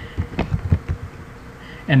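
Computer keyboard being typed on: about half a dozen quick key clicks in the first second, then a pause.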